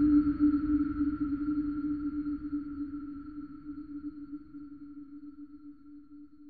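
Ambient electronic music: a single sustained synthesized tone, low with a fainter higher overtone, over a low rumble, slowly fading away.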